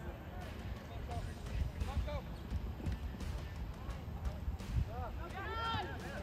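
Distant shouts of players and spectators across a soccer field, short calls now and then, with one longer, louder call about five seconds in, over a steady low rumble.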